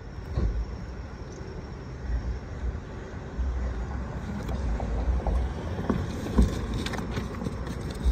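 Wind buffeting the microphone in gusts, with scattered knocks and rustles from a cardboard box being opened and handled in a car trunk, and one sharper knock about six seconds in.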